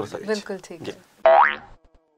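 A man's voice for about the first second, then a short cartoon-style boing sound effect about a second and a quarter in, rising quickly in pitch. It is the opening of a transition sting into a title graphic.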